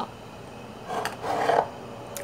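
Glass jars rubbing and scraping as a hand shifts them on a small shelf: one brief rasping sound about a second in.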